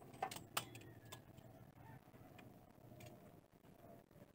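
Near silence, with three faint sharp clicks in the first second or so.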